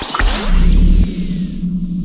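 Synthesized logo-intro sound effects: a whoosh into a deep low hit just after the start that rumbles for about a second, under a steady low hum, with a thin high tone held briefly in the middle.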